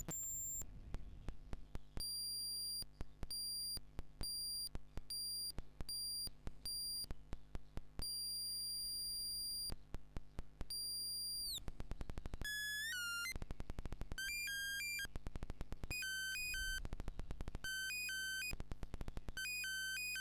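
Doepfer Eurorack modular synth VCO playing a square wave whose pitch is stepped by two mixed square-wave LFOs, one of them free-running, making a crude semi-random sequence. A very high-pitched tone cuts in and out in an uneven rhythm with clicks. About eleven seconds in it glides down and then jumps quickly among several lower notes.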